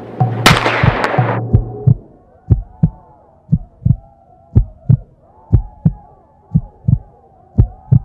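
Heartbeat sound effect: low double thumps, lub-dub, about once a second, over faint bubbling underwater-style tones. Before the heartbeat starts there is a loud rush of noise, starting sharply about half a second in and dying away by two seconds.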